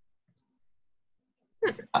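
Near silence, then near the end a short, sharp vocal burst from a person, in two quick puffs.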